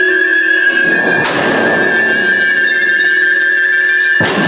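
Dramatic film soundtrack: a steady high drone is held throughout, and a sudden burst of noise comes in about a second in and fades away.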